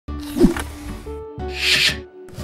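Short intro jingle: music with noisy whooshing sweeps, one with a falling pitch about half a second in and a louder hissing rush near the end.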